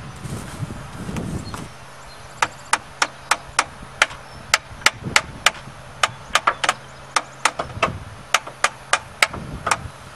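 Hammer rapping a rusty, sticking starter motor, about thirty quick metallic strikes at roughly four a second, starting a couple of seconds in, to free the starter.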